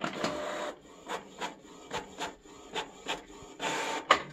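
Canon inkjet printer printing a page: a whirr as it starts, then a run of short, regular mechanical strokes about three a second, and another whirr near the end as the printed page feeds out onto the tray.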